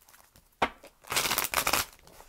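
A deck of tarot cards being shuffled by hand: a sharp snap just over half a second in, then a rustling riffle of cards lasting under a second.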